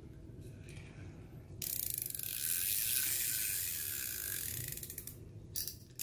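Spinning fishing reel cranked by hand: its gears and rotor run with a fast, fine clicking that starts about a second and a half in and lasts about four seconds.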